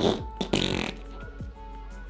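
A man blows air out through puffed cheeks and pressed lips, a short lip-buzzing raspberry of disbelief in the first second, over background music with a steady beat.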